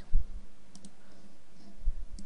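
Computer mouse button clicks picked up by the recording microphone: a couple of faint sharp clicks about a second in and another near the end. There are low thumps near the start and near the end, over a steady low hum.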